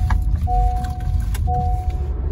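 Honda City's seat-belt reminder chime, a pitched electronic beep repeating about once a second, with each beep lasting most of a second. It warns that the driver's seat belt is unfastened while the car is moving. Under it is the car's low road and engine rumble.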